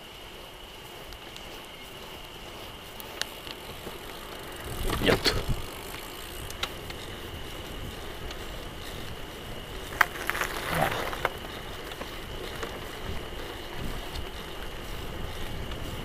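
Bicycle riding along a rough, cracked asphalt lane: steady tyre and road noise with wind on the microphone. Louder clusters of knocks come about five seconds in and again about ten seconds in, as the bike jolts over the broken surface.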